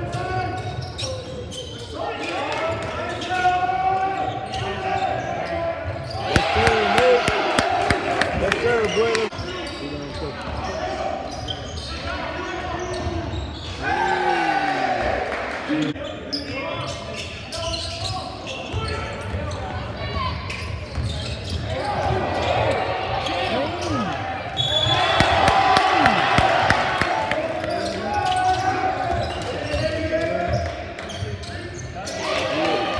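Basketball bouncing on a hardwood gym floor as players dribble during a game, with many sharp knocks and players and coaches calling out.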